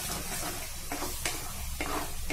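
Onion-tomato masala frying in a pan, sizzling while a spatula stirs and scrapes through it in quick repeated strokes.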